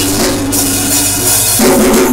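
Live band playing a reggae groove in an instrumental stretch, the drum kit to the fore over a steady bass line.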